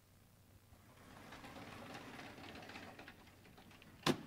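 Faint, continuous scraping and rolling of a sliding chalkboard panel being pushed along its track, swelling in the middle and easing off near the end.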